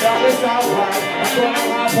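Live band playing an instrumental jam: drum kit with cymbal strokes about four a second, over electric guitar and keyboards.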